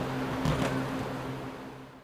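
Steady low hum of the gym's room tone with a single soft thump about half a second in, likely a foot or body landing on the judo mat, the whole sound fading out toward the end.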